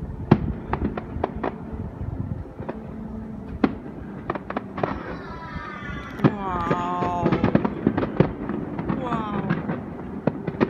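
Aerial fireworks bursting: a string of sharp bangs and crackles at irregular intervals. A person's voice comes in over them in the middle of the stretch and again near the end.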